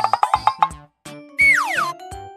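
Background music with a steady beat. It opens with a quick rising run of short plucked notes, and about a second and a half in comes a cartoon sound effect: one falling pitch glide lasting about half a second.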